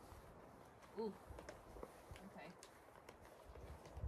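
Near silence outdoors, with a few faint scattered clicks and taps.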